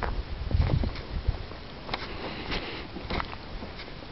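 Footsteps through rough grass, with scattered rustles and a low wind rumble on the microphone in the first second.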